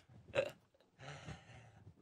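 A man's short throaty vocal sound about half a second in, then faint rustling.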